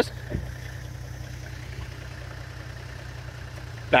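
Toyota Land Cruiser engine idling, a steady low hum. A brief low bump comes just after the start.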